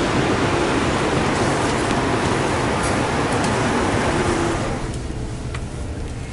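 Steady, loud noise of road traffic and buses, an even rushing rumble with no distinct events, which drops to a quieter background about five seconds in.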